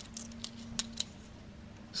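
2 euro coins clicking against one another as they are pushed off a hand-held stack: a few light metallic clicks, the two sharpest close together around the middle.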